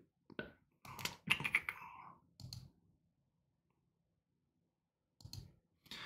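Computer mouse and keyboard clicks: a few short taps in the first two seconds or so, then a silent gap, then one more click near the end.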